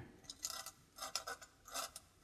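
A tool scratching into painted cold-pressed watercolour paper in a few short, faint strokes, lifting out thin white lines in the fur.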